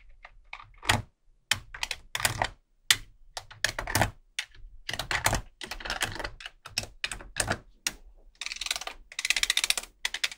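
Small magnetic balls clicking and clattering as rows of them, slid off a clear plastic sheet, snap onto a wall built of magnet balls. Separate clicks and short clusters, then a dense, rapid rattle of clicks near the end.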